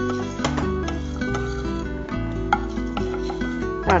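Light plucked-string background music, ukulele or guitar, with a metal ladle scraping and stirring a dry tempering of dal and curry leaves in a kadai.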